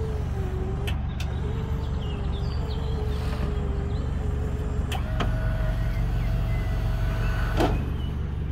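Minibus wheelchair lift's motor running as the platform unfolds and lowers. It is a steady whine that steps up in pitch about five seconds in, with clunks about a second in, at the pitch change and near the end.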